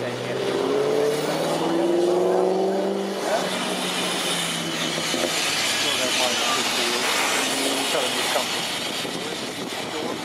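1908 GWR steam rail motor No. 93 pulling away, with steam hissing steadily from about three seconds in. In the first three seconds a droning, engine-like tone rises slightly in pitch.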